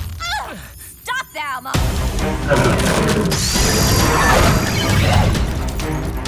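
Cartoon action soundtrack: brief sliding-pitch strained cries in the first second and a half, then, from a sudden loud onset, dramatic music with crashing and shattering sound effects.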